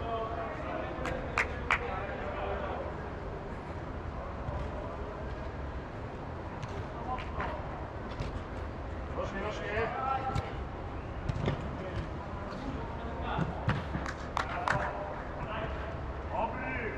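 Players shouting across an indoor football pitch, with a few sharp thuds of the ball being kicked, twice early on and several times near the end, in a reverberant air-dome hall over a steady low hum.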